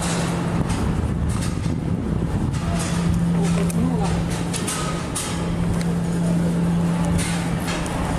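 Steady traffic noise from the bridge, with a low hum that comes and goes, footsteps on a steel-grating walkway, and voices in the background.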